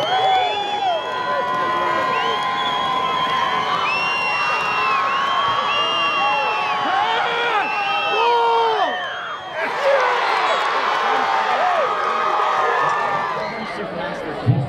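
Football crowd cheering and yelling, many voices overlapping. It drops briefly about two-thirds of the way through, then picks up again.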